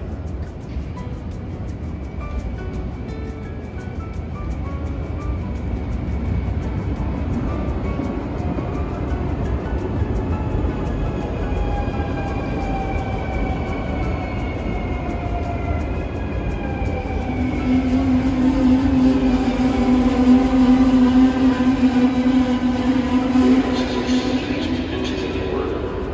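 NS double-deck electric train pulling into the platform and braking: a rumble that builds as it comes closer, with long falling whines as it slows. About two-thirds of the way in, a loud steady low-pitched tone sets in and is the loudest sound.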